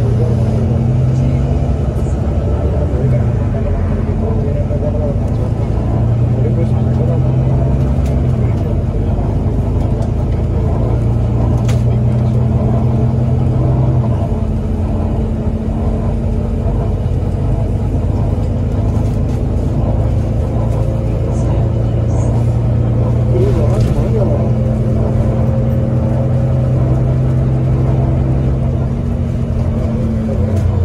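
Volvo B9TL bus's six-cylinder diesel engine and Voith automatic gearbox heard from inside the lower deck under way, a steady loud drone. The pitch steps a few times in the first half, then holds even.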